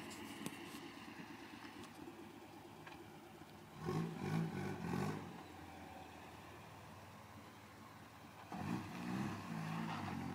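Mitsubishi Sigma wagon's 2.6-litre Astron four-cylinder engine revved hard twice, about four seconds in and again near the end, settling back between. It is heard at a distance, failing to light up the tyres: the owner says the 2.6 can't do a burnout.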